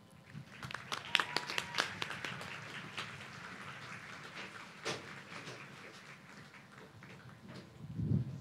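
Audience applauding, fairly faint, the clapping dense over the first few seconds and then thinning out and fading.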